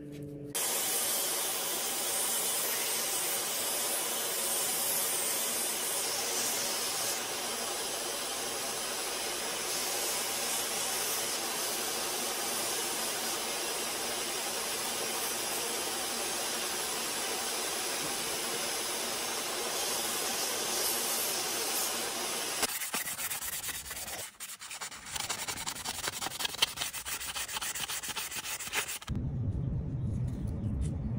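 Central Machinery benchtop belt sander running steadily while the zebrawood handle scales of a pocket knife are sanded down on its belt. About three-quarters of the way through, the steady sanding gives way to quieter, irregular scratching.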